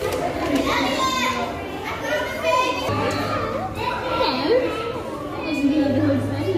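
Indistinct chatter of several voices, children's among them, with lively rising and falling calls, in a large indoor hall. A low steady hum joins about halfway through.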